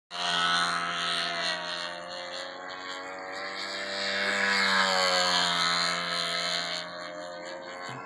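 A control-line stunt model airplane's engine running steadily as the plane circles on its lines. Its pitch bends and its loudness swells and fades with each lap, loudest near the start and again about halfway through.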